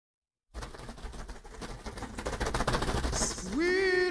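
A dense crackle of small clicks that swells over about three seconds, then near the end a single voice starts singing, sliding up into a long held note.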